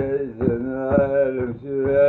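A man singing a wordless, chant-like melody in long held notes, with a few short taps in between.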